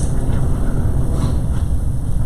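A steady low rumble of room background noise with no speech, the same rumble that runs beneath the talk on either side.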